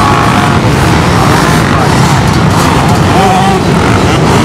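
A large pack of off-road motorcycles racing past on sand, many engines running at once, loud and continuous, with single bikes' revs rising and falling over the mass of engine noise.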